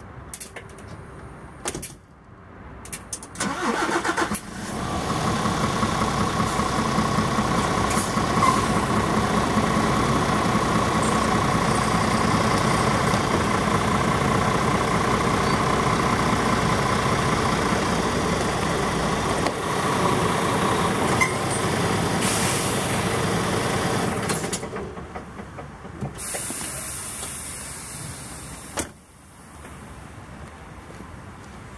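Diesel engine of a truck tractor unit starting about four seconds in and running steadily as the truck creeps forward onto the snow chain laid over its drive wheel. The engine sound dies down a few seconds before the end.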